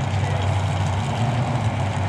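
Car engine idling steadily at a low, even pitch.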